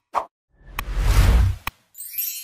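Logo-animation sound effects: a short pop just after the start, then a whoosh with a deep rumble that swells for about a second and ends in a sharp click. A bright chime begins right at the end.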